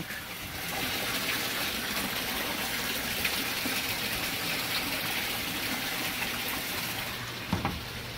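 Water pouring steadily out of a PVC drain pipe and splashing into an aquaponics sump tank. This is the gravity return from three grow beds.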